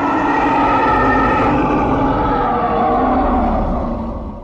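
Intro sound effect: a sustained roar with several held tones over a low rumble, beginning to fade away near the end.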